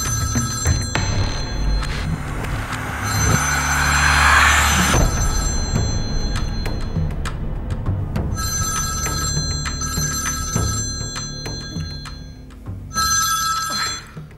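Mobile phone ringing in repeated bursts of a couple of seconds each, over a background music score. A loud rising whoosh swells about three to five seconds in.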